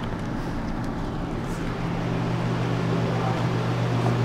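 2007 Volvo S40's 2.4-litre inline-five engine idling steadily, a low even hum that grows a little louder about halfway through.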